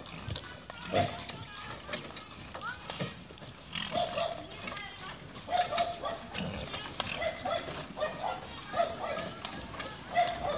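A dog barking in short barks, roughly one a second from about four seconds in, over voices and the knocking and rattling of a two-horse cart moving across grass.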